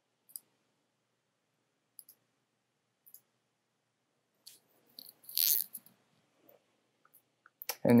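Faint clicks of a computer pointing device, a few scattered over several seconds, with a short, louder rush of noise about five seconds in.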